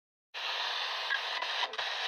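Silence, then about a third of a second in a steady hiss of radio static starts, thin and narrow as through a small radio speaker, with a few faint crackles.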